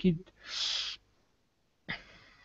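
A spoken word ends, then comes a short breathy exhale into the microphone lasting about half a second, followed by quiet.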